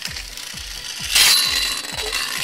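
Metal-rimmed toy spinning top (Mortal Shark G) landing on a hand-held plastic dish about a second in with a loud scrape, then spinning and rattling against the plastic.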